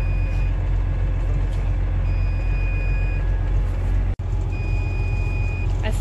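A vehicle engine idling with a low, steady rumble, and a high electronic warning beep sounding three times, each beep about a second long and about two and a half seconds apart. The sound cuts out for an instant just after four seconds.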